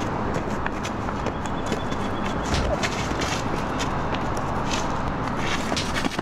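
Wind buffeting the microphone, with scuffling footsteps and short knocks scattered through it from a fight.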